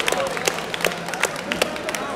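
Spectators applauding a goal: scattered, irregular hand claps, several a second, over crowd chatter.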